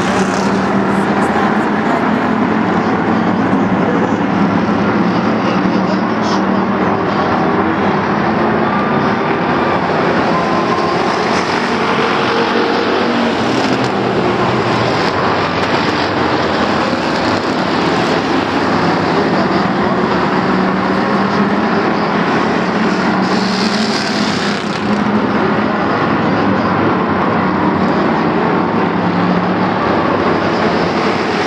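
A pack of Bomber-class stock cars racing on a short oval, many engines running together in a loud, continuous din as the field circles the track.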